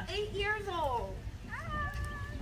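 High-pitched human voices with strongly gliding pitch, calling out in two stretches: one through the first second and another starting about a second and a half in.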